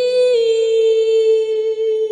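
A woman singing one long held note without accompaniment, with a small step down in pitch about a third of a second in.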